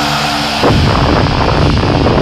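Black/thrash metal band recording: a held distorted chord rings steadily, then about half a second in the full band crashes back in with a dense wall of distorted guitars and drums.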